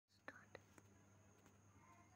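Near silence: faint room tone with a steady low hum and a few faint clicks in the first second or so.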